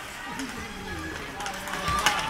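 Ice hockey game sounds: voices calling out over play, with clicks of sticks and puck on the ice and a sharp knock near the end.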